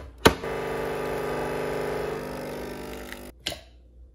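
A button click, then a Nespresso capsule coffee machine's pump buzzing steadily for about three seconds as it brews, weakening a little before it cuts off, followed by another click.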